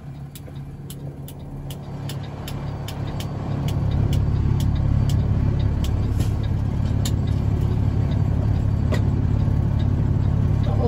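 Heavy diesel engine droning at a steady pitch, growing louder over the first four seconds and then holding, with a regular light ticking of about two to three clicks a second.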